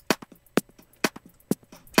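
Electronic drum loop played back through Ableton Live's Beats warp mode, chopped into slices and replayed from the preserved transients. Sharp drum hits come about twice a second with smaller clicks between them, giving a choppy, slightly funky sound.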